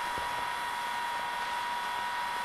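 Hair dryer wrapped in a cloth, running steadily: an even rush of air with a steady high whine from its motor.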